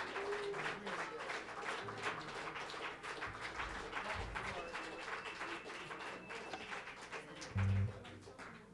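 Audience applauding with some scattered voices, the clapping thinning out toward the end. A brief loud low thump comes just before it ends.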